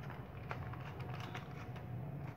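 Wooden pepper mill being twisted to grind black pepper, heard as faint scattered crunching clicks over a steady low hum.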